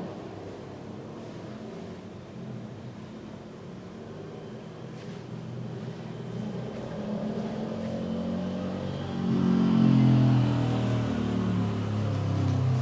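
A motor vehicle's engine, faint at first and growing steadily louder, loudest in the last few seconds.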